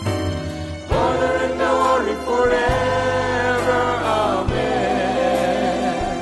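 Church worship music: a slow praise song with group singing over a band, held notes over a bass line that changes chord about every two seconds.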